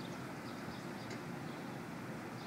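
Steady low background rumble with a few faint, short high chirps scattered over it.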